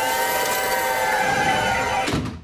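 Casino slot machines ringing out a payout: a dense layer of electronic tones, several held and some sliding up and down in pitch.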